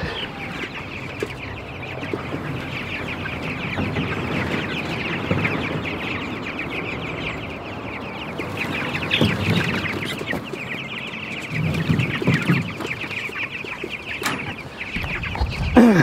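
A flock of three-week-old broiler chicks peeping constantly in many short high calls, with a few louder low scuffing noises about nine and twelve seconds in.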